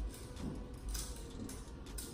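A few faint clicks of small metal brake parts being handled at a bicycle's rear disc brake caliper during a brake pad change.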